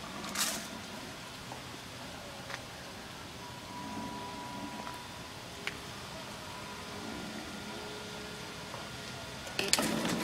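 Faint steady background noise with a sharp click about half a second in. A loud recorded voice from the prop begins just before the end.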